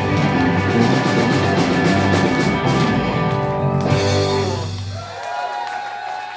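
Live rock band of electric guitar, bass guitar and drum kit playing the final bars of a song. The full band stops about four seconds in, leaving a last chord ringing out, and audience whoops rise near the end.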